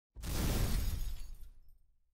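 Intro sound effect for a title card: a sudden crashing hit with a deep low boom. It dies away over about a second and a half.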